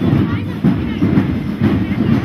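Parade drums beating a march rhythm, heavy low thuds about twice a second, with voices of people in the street.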